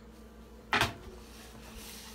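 A single sharp knock a little under a second in. Near the end comes a faint soft rustle as a hand closes on a powder-crusted sponge.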